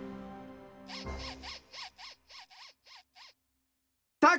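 Cartoon sound effect: background music fades out, then a low rumble and a quick run of about nine electronic chirps, each rising and falling in pitch, stop abruptly.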